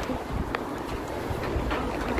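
Wind rumbling on the microphone over a low hum of city traffic, with a single sharp click about half a second in.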